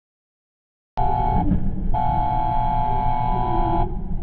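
A vehicle horn sounding about a second in: a short toot, then a longer honk of nearly two seconds, over the low rumble of a motorcycle engine and road noise.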